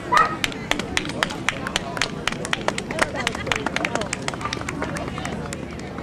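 Scattered hand clapping from spectators, a few people clapping irregularly for about five seconds, over a background of crowd chatter. A short, high-pitched cry is the loudest sound, right at the start.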